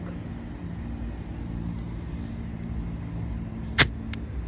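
A steady low motor hum, with one sharp click near the end.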